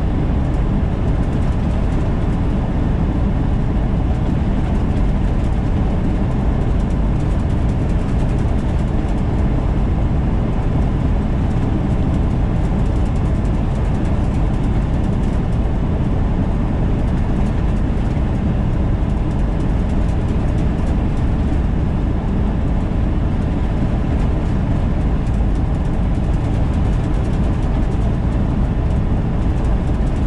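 Semi-truck at highway cruising speed, heard inside the cab: a steady low engine drone mixed with tyre and road noise, with a faint steady whine above it.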